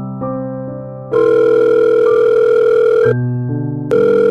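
Telephone ringing sound effect: a loud, buzzy ring tone about two seconds long starting about a second in, then a second ring beginning just before the end, over soft piano background music.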